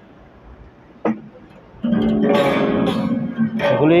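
Acoustic guitar played by hand: a single plucked note about a second in, then a chord strummed at about two seconds that rings out until near the end.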